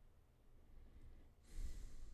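Faint room tone with a single soft breath out into the microphone about one and a half seconds in.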